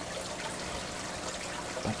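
Water trickling steadily in an aquarium tank, an even sound with no breaks.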